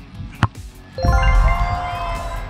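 A football struck once with a short sharp smack about half a second in. About a second in comes a loud deep boom with a bright ringing chime sound effect that rings on to the end, over background music.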